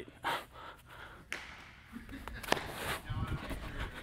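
A short breathy laugh and breathing, with two sharp knocks a little over a second apart as ground balls are fielded with a lightweight Wilson A450 baseball glove.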